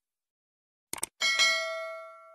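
Subscribe-button animation sound effect: a quick double click, then a single bell ding that rings out and fades over about a second and a half.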